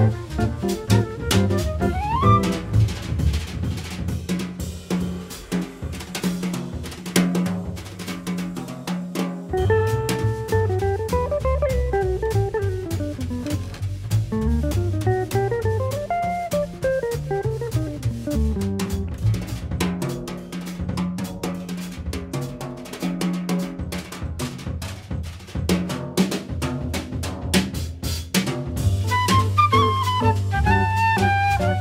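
Jazz drum kit played with sticks in a busy, featured passage, with many sharp snare, rimshot, bass-drum and cymbal hits, over low bass notes.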